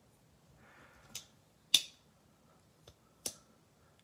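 Case Copperhead slip-joint pocketknife being worked by hand, its blades clicking against the backspring as they snap shut and open: four light, sharp clicks, the second one loudest.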